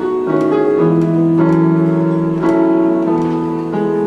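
Portable electronic keyboard played with a piano sound, slow held chords changing every second or so.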